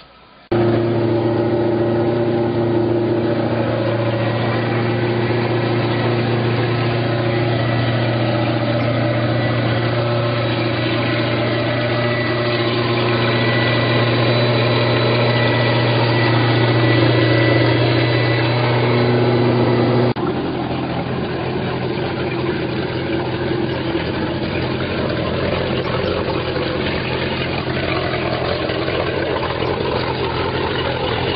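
MerCruiser 5.0-litre V8 sterndrive engine running steadily on the trailer, cooled by a garden hose. About two-thirds through the level drops abruptly and it carries on somewhat quieter.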